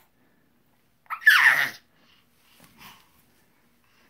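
A six-month-old baby making a pretty funny noise with his voice: one loud, hoarse, breathy burst a little over a second in, then a faint shorter one near three seconds.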